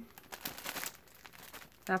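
Thin plastic wrapping around a skein of yarn crinkling as it is handled: a soft, irregular run of crackles that stops just before the end.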